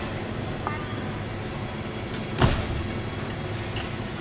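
A gymnast's feet landing on a balance beam, a single thud about two and a half seconds in, over the murmur of an arena crowd.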